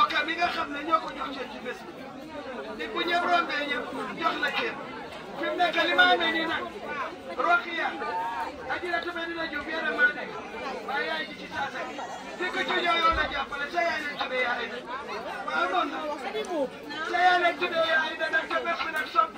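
Speech: a woman talking through a handheld megaphone, with chatter from the people around.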